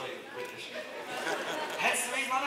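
Indistinct speech with crowd chatter.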